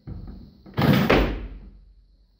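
A loaded barbell being cleaned from the platform: a knock as the bar breaks from the floor, then, about a second in, a much louder clash and rush as the lifter drops under it and catches the bar on his chest in a deep squat, fading quickly.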